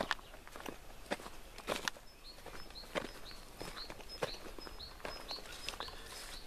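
Footsteps of a person walking through grass and tilled soil, about two steps a second. From about two seconds in, a bird chirps in a high, evenly repeated series.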